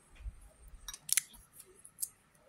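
A few short clicks and brief scratchy rustles of plastic-wrapped body spray bottles being handled, the loudest a little after a second in.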